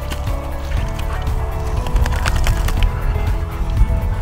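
Background music with sustained chords over a heavy bass.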